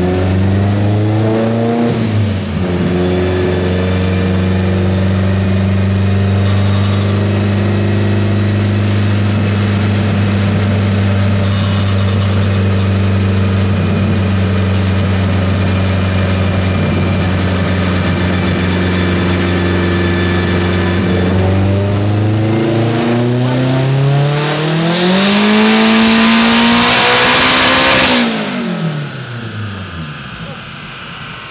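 Turbocharged Acura Integra engine running on a chassis dyno. It holds a steady speed for about twenty seconds, then makes a full-throttle pull that climbs steadily in pitch and is loudest over its last few seconds. Near the end the note drops away suddenly as the throttle closes and the engine winds down.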